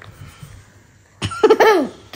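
A child's short vocal sound, starting sharply just over a second in, with a pitch that rises and then falls, after a quiet first second.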